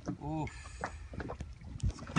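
A short exhaled 'uf', then a few light knocks and a low thump near the end from the plastic sit-on-top kayak and its raised seat frame as a man shifts his weight on it, over a low wind rumble on the microphone.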